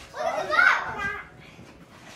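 A young child's high voice, one short vocal sound lasting about a second near the start, then quieter background.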